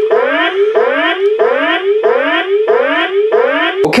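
Electronic alarm sound effect from the Fisher-Price Imaginext Battle Rover toy's speaker: a repeating rising siren-like whoop, about three sweeps a second.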